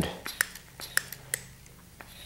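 Mityvac MV8500 hand vacuum/pressure pump being worked by hand, giving several sharp clicks in the first second and a half as it pressurizes a trimmer fuel tank toward 7 PSI for a leak test.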